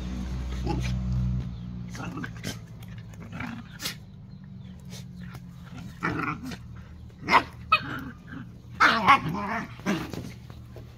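Dogs play-fighting, a mother and her pups, giving short bursts of growls and barks while they wrestle, the loudest about seven and nine seconds in.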